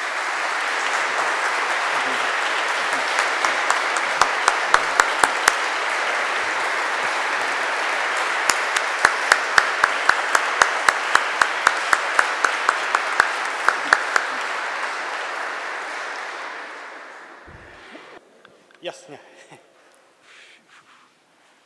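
Audience applauding: a dense, steady clapping with a few sharper single claps standing out, dying away about seventeen seconds in.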